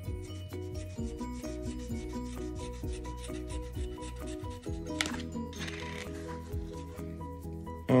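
A coin scratching the coating off a lottery scratch-off ticket in many short, repeated strokes, over background music.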